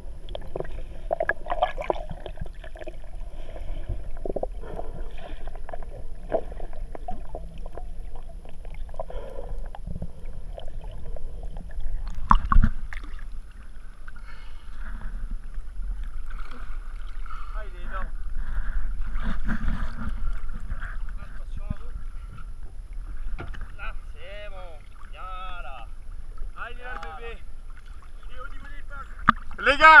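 Sea water sloshing and lapping against a waterproof action camera held at the sea surface and dipping under it, with muffled voices in the distance. One sharp knock or splash about twelve seconds in is the loudest sound.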